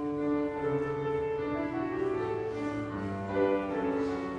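The first song of a middle school choir concert begins abruptly: several sustained notes are held together as chords, shifting in pitch every second or so.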